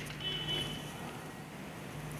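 Quiet background with a low steady hum, and a faint high whine during most of the first second.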